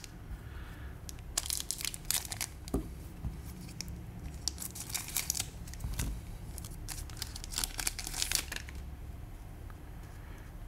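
Foil trading-card booster pack being torn open and crinkled by hand, in several spells of sharp crackles.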